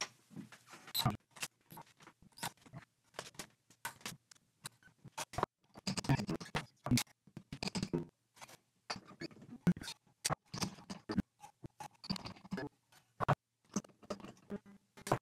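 Light, irregular clicks, taps and scratches of steel strings being handled and fitted while a 1965 Fender Jazzmaster is restrung, as the strings go through the vibrato tailpiece and onto the tuners.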